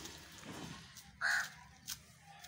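A donkey rolling on its back in dry dirt, a scuffing rustle, then about a second in one short, loud, harsh crow-like caw, the loudest sound, and a sharp click near the end.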